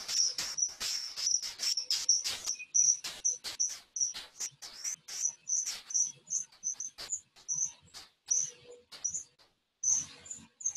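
Road bike on an indoor trainer pedalled all-out: a high chirping squeak repeating about twice a second, with quick noisy strokes in between.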